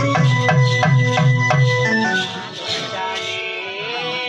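Live stage-drama accompaniment: a hand drum plays a quick, steady rhythm under held keyboard notes. The drumming stops about two seconds in, leaving the keyboard notes sounding with a sliding tone near the end.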